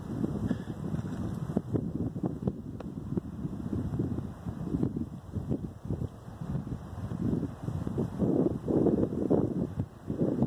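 Wind buffeting a phone microphone outdoors: an uneven low rumble that comes and goes in gusts, strongest near the end.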